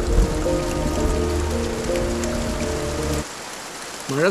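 Steady rain falling, under film-score music with long held notes and a bass line. The music stops about three seconds in and leaves the rain alone.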